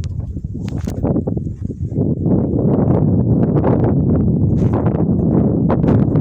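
Wind buffeting a phone's microphone in a low rumble that grows louder about two seconds in, with irregular crunches and knocks from footsteps on stony dirt.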